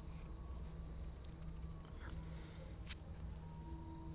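Faint background room sound: an insect chirping in a steady, rapid, high-pitched pulse over a low hum. There is a single click about three seconds in.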